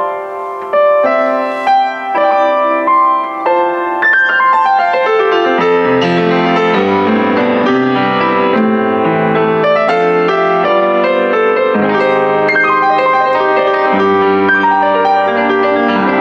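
Kemble K131 upright piano played with its top lid folded back, which makes it slightly louder and a little brighter and lets more of the harmonics escape. It starts with single notes in the middle and upper range, then about five seconds in, bass notes join and it fills out into full chords.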